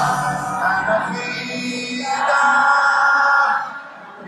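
Reggae band playing live through stadium loudspeakers, heard from within the crowd, with singing over it and a long held note in the second half; the sound drops away sharply near the end.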